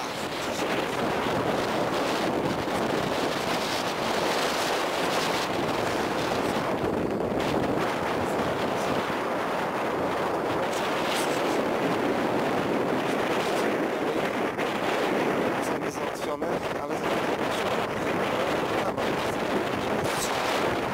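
Steady wind rushing across the microphone and open ground, a continuous, unbroken noise with no let-up.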